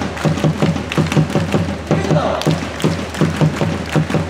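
A baseball player's stadium cheer song: music with a steady, fast drum beat, and crowd voices along with it.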